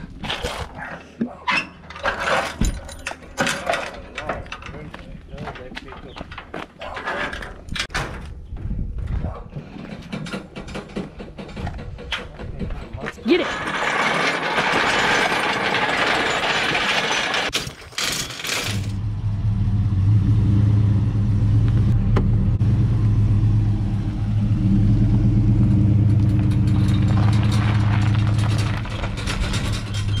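Repeated metal clanks and knocks as a steel engine hoist is handled onto a utility trailer. Then, about two-thirds of the way in, a pickup truck's engine comes in and runs steadily to the end.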